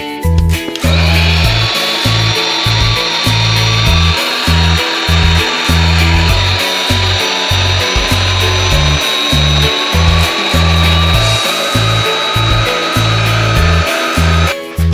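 A handheld electric air pump switches on about a second in. It rises briefly in pitch as it spins up, then runs steadily with a whine over a rush of air as it inflates the inner mattress of an inflatable toddler bed. Background music with a steady beat plays underneath.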